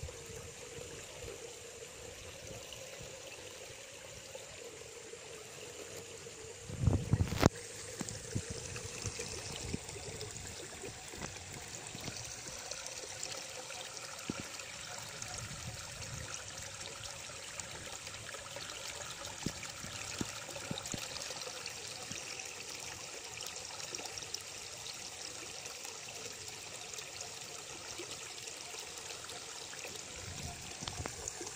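Steady trickling and splashing of water running from a pipe into a pond. About a quarter of the way in there is a short, loud low rumble.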